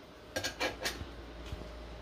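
A few light metallic clinks and knocks as a stainless steel cocktail shaker holding ice and a small dye bottle are handled and the shaker is capped. Three come close together in the first second, and a fainter one follows about a second and a half in.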